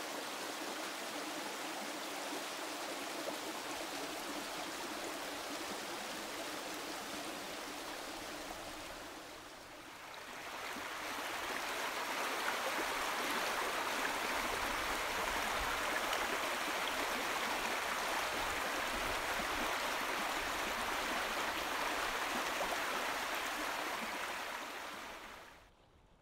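Spring-fed stream rushing over stones: a steady rush of water that dips briefly about ten seconds in, comes back louder, and stops abruptly just before the end.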